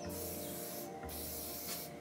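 Aerosol spray-paint can hissing as a circle is sprayed onto a wall, in two bursts with a short break about a second in.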